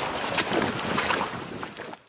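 Gusting wind buffeting the microphone over running water, with splashing footsteps through shallow water on a flooded path, a step every few tenths of a second. It all fades out near the end.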